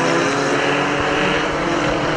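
Engines of pre-1975 banger cars running at a steady, held high rev. One car is pushing against others with its wheels spinning on the dirt track.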